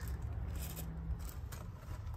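Faint rubbing and scraping noise from a handheld camera being moved around, over a steady low rumble.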